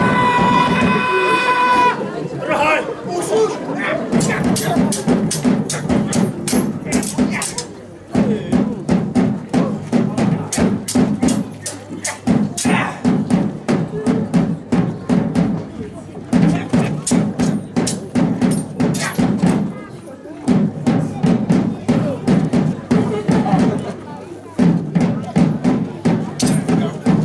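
Steel sabres clashing again and again in a staged sword fight, with sharp metallic strikes throughout. Under them a drum rolls in phrases of about four seconds with short breaks, and a loud held shout opens the fight.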